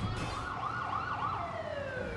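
Ambulance siren wailing in a quick up-and-down yelp, about three swings a second, then a long falling tone as it winds down near the end.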